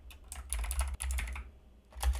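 Typing on a computer keyboard: a quick run of key clicks that thins out in the last half second.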